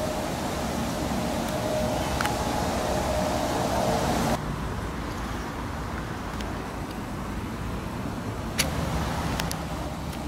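Steady, low, rumbling outdoor background noise. It drops abruptly about four seconds in, and a few sharp clicks come near the end.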